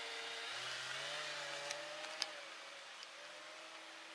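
Camper van engine pulling away, its note rising as it gets under way, then fading as the van drives off. A sharp click comes about two seconds in.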